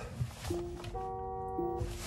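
2022 Rivian R1T's horn sounding once for just over a second, a steady chord of several tones starting about half a second in. It is very quiet as heard from inside the cabin.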